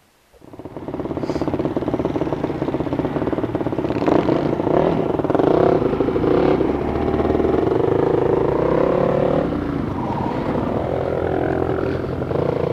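Dirt bike engine starting about half a second in and running, with revs rising and falling from about four seconds in as the bike rides off.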